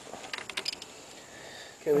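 A quick series of light metallic clicks in the first second as a breaker bar and socket are worked on a GY6 engine's variator nut, held by a strap wrench, for a last bit of tightening.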